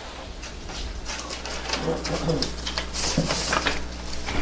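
Paper and a folder being handled and leafed through on a table: rustling with small taps and clicks, the loudest rustle about three seconds in.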